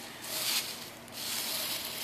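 Dry fallen leaves rustling as they are scooped up by hand, in two swells: a short one just after the start and a longer one from about a second in.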